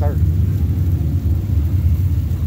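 A loud, steady low rumble with no clear source.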